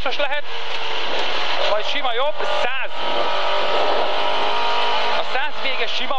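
Lada 2107 rally car's four-cylinder engine running hard on a rally stage, heard from inside the cabin. Short bursts of the co-driver's pace notes come over it.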